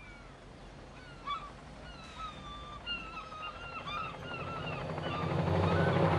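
Seagulls calling: a run of short, wavering, mewing cries, some overlapping. A low rumble swells under them in the last second or so.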